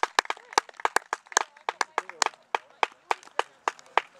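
A few spectators clapping by hand: sharp, uneven claps, about six a second, that stop suddenly at the end.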